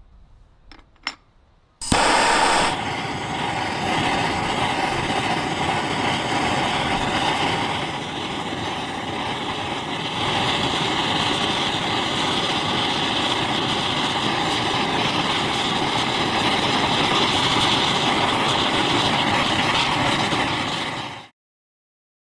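A few light clinks of metal bars in a ceramic crucible, then a handheld gas torch starts with a sudden burst and runs as a steady roaring hiss while its flame heats the metal to melt it. It grows louder about ten seconds in and cuts off suddenly near the end.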